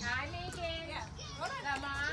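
Long latex modelling balloon squeaking as it is twisted by hand: a quick series of short, high squeaks that bend up and down in pitch.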